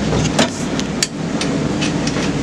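Mine shaft cage running in a wet shaft: a steady rumble and rush of water, with a few sharp metallic knocks.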